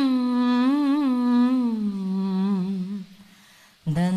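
A solo voice singing a slow, ornamented devotional melody, the kind of invocation sung during a ceremonial lamp lighting. It holds a wavering note, sinks lower around the middle, breaks off about three seconds in, and comes back in just before the end.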